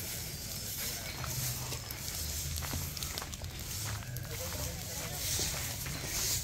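Open bonfire of dry brush and household trash burning, with a steady hiss and small irregular crackles and pops.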